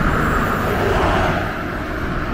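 Road traffic noise: a steady rush of vehicles on the road, swelling slightly about a second in.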